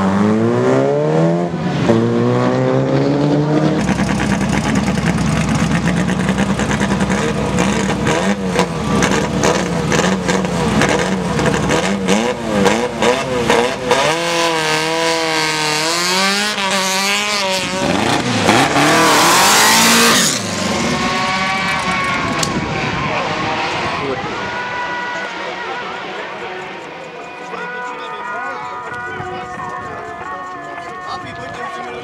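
Race car engines at a hill-climb start: a hatchback revs hard and pulls away, then a Škoda saloon revs in waves at the line. The Škoda launches with the loudest burst of engine noise about nineteen seconds in and fades away up the course. Near the end a formula car's engine runs more quietly at the line.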